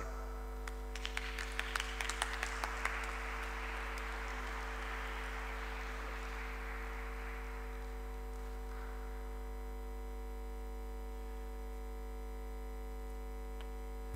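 Audience applause: scattered claps that build into steady clapping and then die away about eight or nine seconds in. A steady electrical mains hum from the sound system runs underneath throughout.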